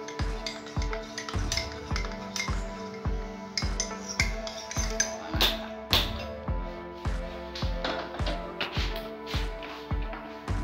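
Background music with a steady beat of about two low thumps a second under held tones.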